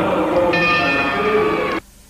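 Bell-like ringing tones, several sounding together over a noisy background, cut off abruptly near the end.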